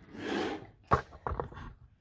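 A short breathy cough, then a sharp knock about a second in and a few lighter knocks of small boxed items being moved on a wooden table.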